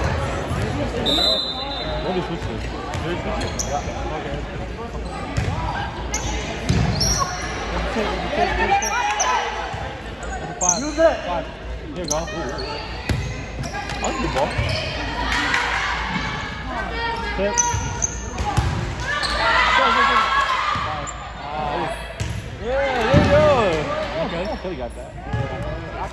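Volleyballs being struck during play on a hardwood gym court, with players and spectators calling out and talking, all echoing around the hall.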